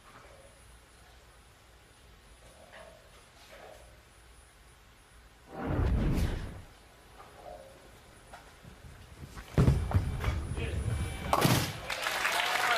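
Bowling ball released onto the wooden lane for a spare shot, landing with a sudden loud thud near the end and rolling on toward the pins. A brief heavy rumble is heard about halfway, over a quiet arena background.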